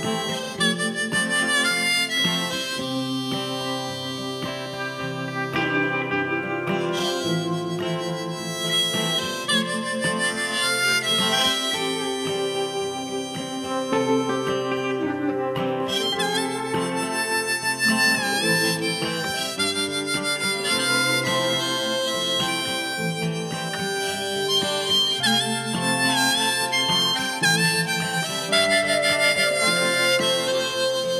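Harmonica played from a neck rack, taking an instrumental solo over a band with guitar accompaniment in a country-folk song.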